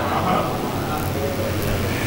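Steady background noise with a low, even hum, heard through a public-address system during a pause in amplified speech.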